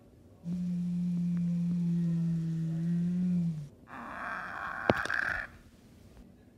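A person voicing a dinosaur: one long, low, steady moan that dips in pitch as it ends, followed by a harsh rasping screech lasting about a second and a half, with a sharp click in the middle of it.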